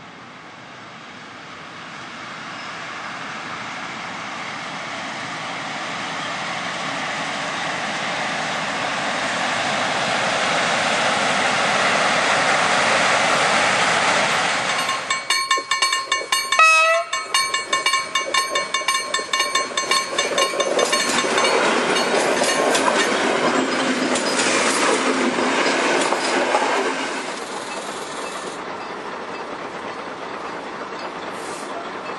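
Freight train hauled by an electric locomotive passing, its rolling noise building steadily for about fourteen seconds. Then a train horn sounds for about two seconds, followed by the rhythmic clickety-clack of wheels over rail joints as an electric multiple unit passes, fading near the end.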